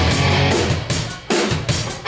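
A live rock band breaks off in a stop: the full sound dies away after about half a second and the drum kit plays a few separate hits (kick and snare) in the gap. The whole band comes back in right at the end.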